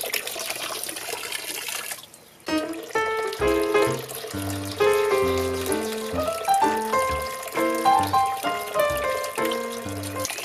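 Water running in a tiered pump-style garden fountain; about two seconds in it cuts off and intro music takes over, a melody of separate, clearly pitched notes.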